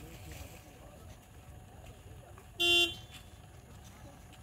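A single short horn honk of one steady pitch, about two and a half seconds in, over faint voices and outdoor background noise.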